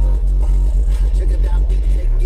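Music played very loud through four Orion HCCA 15-inch subwoofers, heard inside the car, with deep bass far stronger than everything else.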